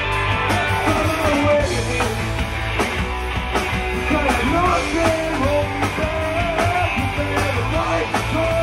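Punk rock band playing live: electric guitar, bass guitar and drums at full volume, with a singing voice over the top.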